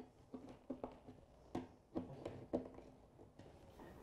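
Faint light clicks and taps, one or two a second, from a screwdriver turning a metal cam lock in a flat-pack panel and small hardware being handled.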